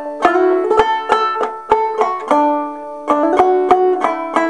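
Banjo with nylgut strings in Double D tuning, an H.C. Dobson remake, played clawhammer style: a phrase of picked notes at about three to four a second, each left to ring, with a short pause shortly before the end.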